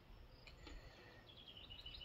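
Near silence outdoors, with a small bird giving a quick series of faint, high chirps in the background during the second half.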